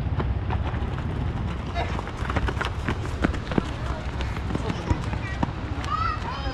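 Footsteps running on a dirt pitch during a casual football game, with a scatter of sharp knocks from about two seconds in and players' shouts and voices around. A steady low rumble of wind or handling noise on the microphone runs underneath.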